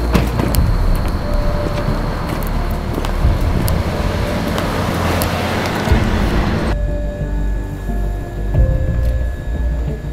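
Background film music with a deep bass, overlaid by a rushing noise that builds in loudness and cuts off suddenly about two-thirds of the way through, leaving sustained musical tones.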